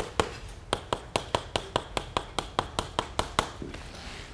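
Chalk tapping on a blackboard in quick, even strokes, about five a second, as a row of small plus signs is drawn. The tapping stops a little before the end.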